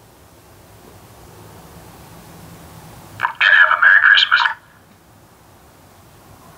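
A man's voice blares briefly through a PA horn speaker driven by a CB radio, sounding tinny and narrow like a telephone, about three seconds in. Before it there is a low steady hum.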